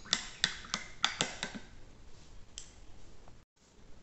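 A quick run of about seven sharp, hard taps in a second and a half, then one more tap a second later; the sound cuts out briefly near the end.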